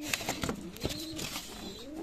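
Domestic pigeons cooing softly, with a few faint knocks.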